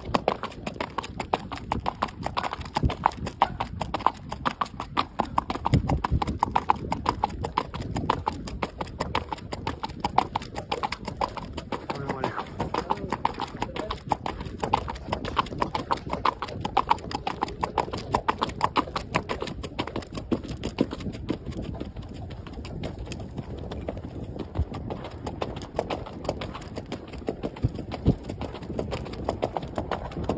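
Hoofbeats of a ridden horse moving at a steady pace, a quick even run of hoof strikes that grows somewhat softer in the last third.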